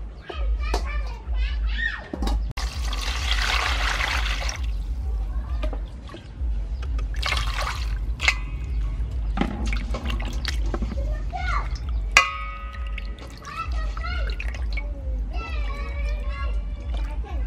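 Water splashing and sloshing in a steel basin as a whole fish and shrimp are washed by hand, loudest in two bursts, a few seconds in and again about halfway, over children's chatter.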